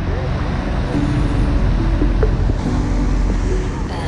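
Harbour ferry's engines running at the wharf, a steady low drone with water churning in its wash.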